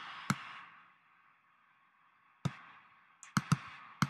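Sharp clicks of a computer mouse: one shortly after the start, one a little past the middle, and a quick run of three near the end, over faint microphone hiss that drops out for a second or so in between.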